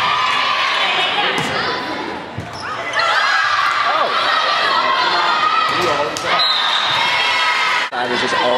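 Volleyball rally in a gymnasium: many voices of players and spectators yelling and cheering, loudest from about three seconds in. A few sharp ball hits echo through the hall.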